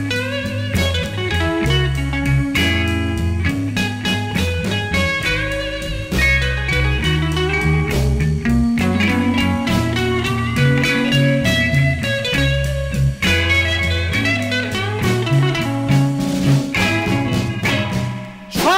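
Electric Chicago blues band playing an instrumental passage: electric guitar lines over bass and drums, with a steady beat and no vocals.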